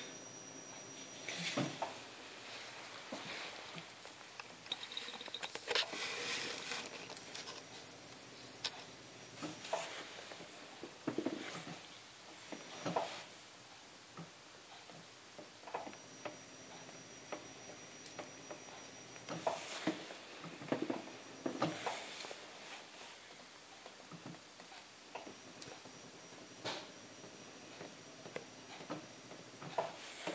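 Quiet, scattered scratches and light taps of a pointed tool incising lines into a slip-coated clay beaker on a potter's wheel.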